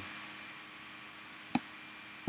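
A single sharp computer mouse click about one and a half seconds in, over a faint steady hiss.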